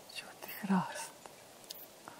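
A woman's soft, whispered voice, with one short voiced syllable a little past halfway through.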